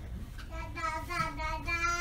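A high voice holding a long, sung-sounding note from about half a second in, shifting pitch slightly once or twice, over a low steady hum.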